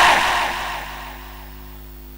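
A man's loud speech over a microphone and loudspeakers dies away in a reverberant tail over about a second. A steady low electrical hum from the sound system remains.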